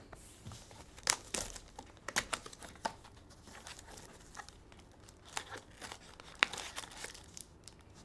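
A small cardboard trading-card box being opened and its foil-wrapped packs handled: scattered crinkling and rustling with occasional sharp clicks. The sharpest clicks come about a second in and near six and a half seconds.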